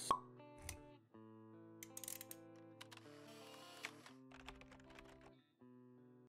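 Quiet intro-jingle music of soft held notes, opening with a single sharp pop and dotted with a few light clicks.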